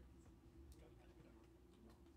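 Near silence: a faint steady hum with a few soft, sharp clicks.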